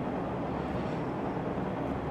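Steady background hiss with a low hum underneath, with no distinct events: the room and microphone noise of the recording.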